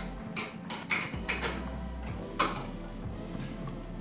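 Light metallic clicks and scrapes as a metal clip is slid onto the stud of an aluminum caliper cover, a cluster in the first second and a half and a sharper click a little over two seconds in, over soft background music.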